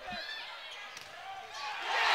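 Sounds of a volleyball rally in an indoor gym, heard faintly: a ball hit about a second in, over low crowd noise that grows louder near the end as the winning point lands.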